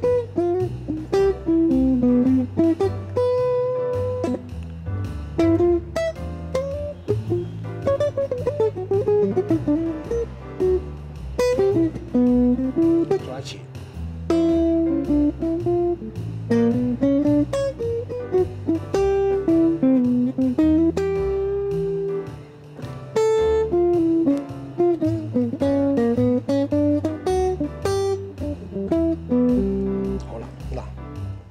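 Electric guitar playing single-note jazz lines, phrase after phrase of short V–I resolutions built on the jazz minor scale, over a low accompaniment that steps from note to note beneath.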